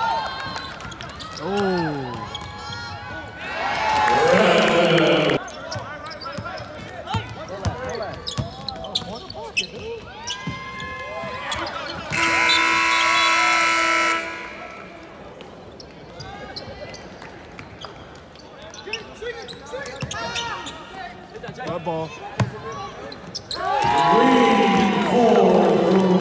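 Basketball game heard courtside in a large arena: a ball bouncing on the hardwood and players and spectators calling out and shouting. About twelve seconds in, the arena horn sounds a steady blast for about two seconds.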